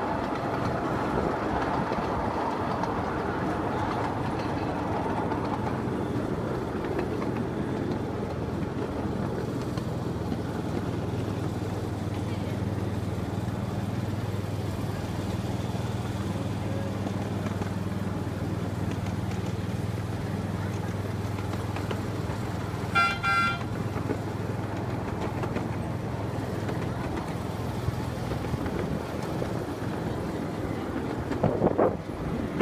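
Miniature railway train riding along with rolling and wind noise and a steady low hum, and one short horn toot about three-quarters of the way through.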